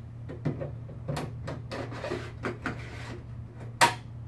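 A Cisco C9300 switch power supply module being pushed into its bay, with small metal knocks and scrapes, then one loud hard snap near the end as it latches in.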